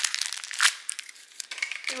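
Paper wrapping crinkling and tearing as a blind-box figurine is unwrapped by hand, in quick irregular crackles.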